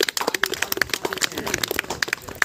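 Hand clapping from a small group of people: many irregular sharp claps overlapping.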